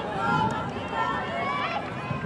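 Several voices talking and calling out over each other, no single word clear, over the open-air noise of a soccer game.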